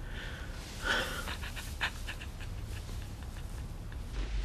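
A person crying: shaky, breathy sobbing, with a louder gasping sob about a second in.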